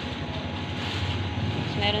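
Steady low background rumble, like a machine or traffic hum, with a voice starting near the end.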